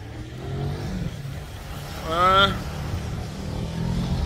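Steady low rumble of passing car traffic on a busy city road, with one short voiced call that bends in pitch about two seconds in.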